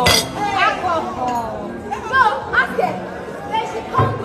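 Several women's voices talking over one another in lively table chatter, with a sharp clink of tableware right at the start.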